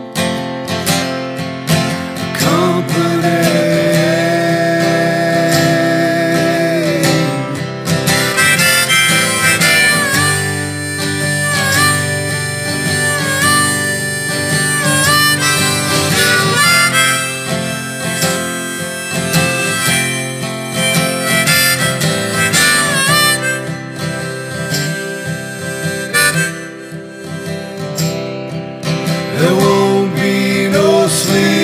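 Instrumental break in a folk song: a harmonica plays long held notes with brief bends over strummed acoustic guitar.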